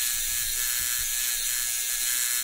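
Electric tattoo machine buzzing steadily while it tattoos skin.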